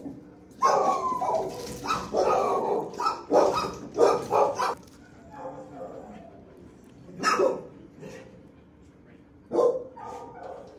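Shelter dogs barking in the kennels: a quick run of barks over the first few seconds, then a single bark past the middle and another near the end.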